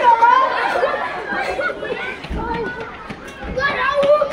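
Several young women's voices talking and calling out over each other, with a few short knocks among them.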